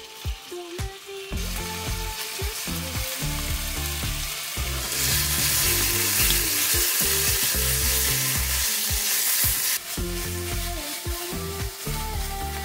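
Spicy marinated pork sizzling as it fries in a stainless steel pan and is stirred with a spatula. The sizzle starts about a second in, right after the meat goes in, and is loudest in the middle stretch before easing again.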